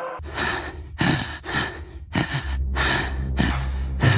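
A cartoon character's gasping, laboured breaths, about one every half second to a second, over a steady low drone.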